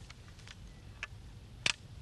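Flintlock long rifle being handled during loading. A few small clicks, with one sharper click near the end, come from the ramrod and lock.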